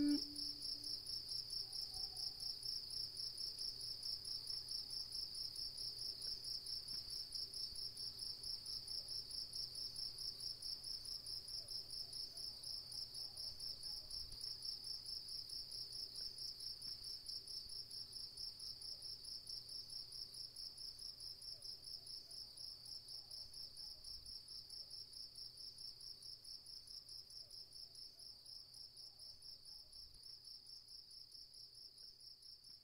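Cricket chirping in a rapid, even pulsing rhythm that slowly fades out, with nothing else beneath it. A held musical tone cuts off at the very start.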